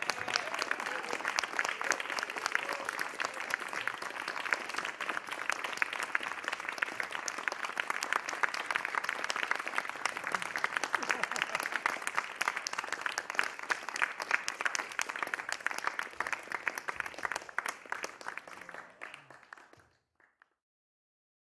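Audience applause: dense, steady clapping that tapers off over the last couple of seconds.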